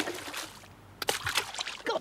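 Water splashing in two short bursts about a second apart, as a paw scoops into a hole in the ice to catch fish.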